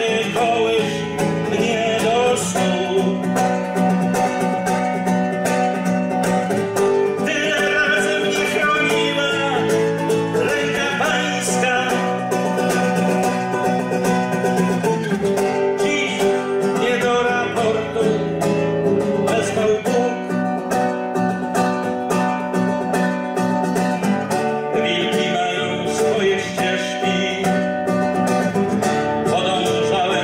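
Solo classical guitar played fingerstyle, an instrumental piece of plucked melody and chords.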